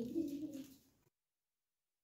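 The trailing end of a child's spoken word, low and drawn out, which breaks off under a second in and is followed by dead digital silence.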